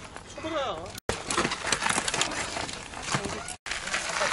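A voice briefly, then a gritty crunching with many scattered sharp clicks: a mountain bike's knobby tyres rolling over dirt, roots and small stones on a steep trail.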